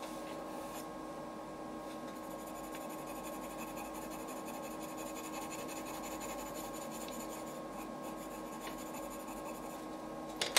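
Coloured pencil hatching on drawing paper: quick, even back-and-forth strokes of the pencil lead scratching quietly and steadily over the paper.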